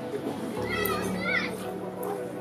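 High-pitched children's voices calling out at play, from about half a second in to a second and a half, over steady background music.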